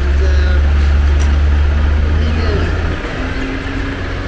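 A loud, steady low rumble that stops abruptly about three seconds in, with faint voices of people nearby.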